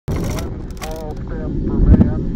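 Intro sound design under an animated logo: a low rumble that swells into a heavy hit just before two seconds, with a person's voice over it.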